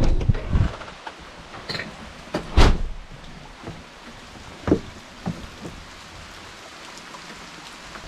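Steady rain falling, broken by knocks and thumps: a cluster in the first second, the loudest about two and a half seconds in, and a few more near the middle.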